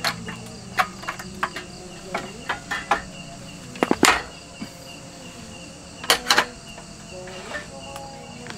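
Crickets chirping steadily, with scattered sharp clicks and knocks over them, loudest in a cluster about four seconds in and again just past six seconds.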